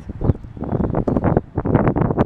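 Wind buffeting the camera microphone outdoors: a loud, uneven rumble with short irregular gusts.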